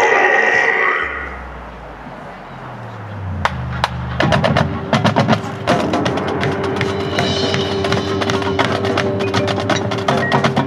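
Marching band with its front-ensemble percussion playing: a low bass line climbs in steps, then about four seconds in the full band comes in with a held note over dense drum and percussion strikes.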